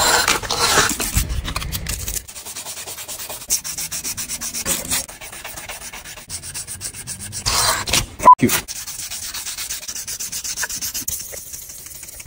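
Hand sanding: a steel knife blade rubbed back and forth on abrasive paper laid on a flat plate in quick, even strokes, to take rust off the blade. The strokes are louder in the first two seconds. A sharp knock about eight seconds in comes with a short laugh.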